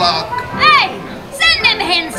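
Recorded character voices of the Pirates of the Caribbean auction scene. Two shrill, high-pitched cries rise and fall, about half a second in and again about a second and a half in, over faint background music.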